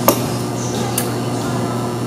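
Two light clicks about a second apart, a stemmed wine glass set down on the tabletop, over a steady low room hum.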